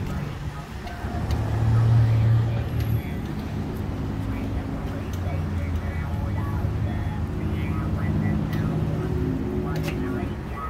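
A motor vehicle's engine running in a parking lot, with a low rumble that swells about a second in and fades by three seconds, then a steady lower hum, under faint voices.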